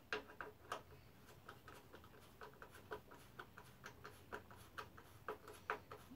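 Faint, irregular clicking and ticking of a fastener being screwed down by hand into a wooden mounting plate.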